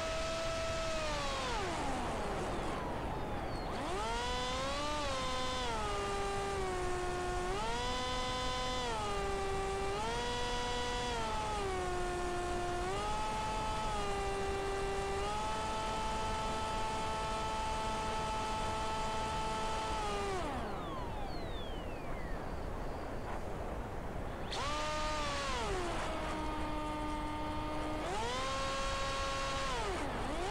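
Emax RS2205 brushless motor spinning the propeller of a Z-84 flying wing in flight, a whine that rises and falls in steps with the throttle. About 20 seconds in the motor is throttled back and the pitch slides down, leaving only rushing air for a few seconds while it glides. About 24 seconds in it is throttled up again.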